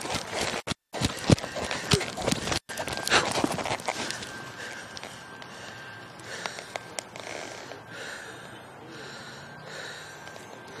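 A horse snorting several times, with the soft hoofbeats of its walk on a dirt arena; the snorts fall in the first few seconds, then it goes quieter.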